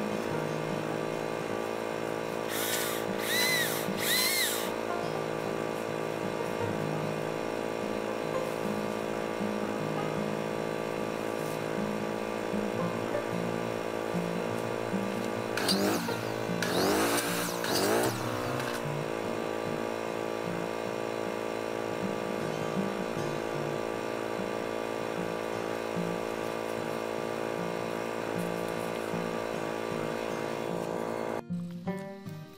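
Three short bursts of a chainsaw a few seconds in. About halfway through comes a circular saw, whirring up, cutting and winding down over about three seconds. Steady background music runs underneath.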